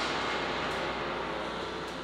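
Steady rushing hiss that slowly fades.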